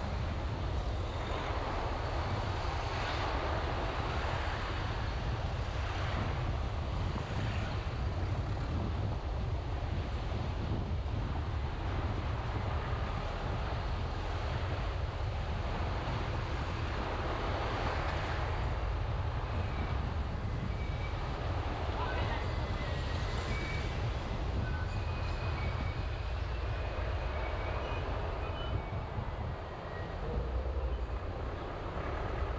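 A car driving slowly through town traffic: a steady low rumble of road and wind noise, with the sound of passing vehicles swelling and fading every few seconds.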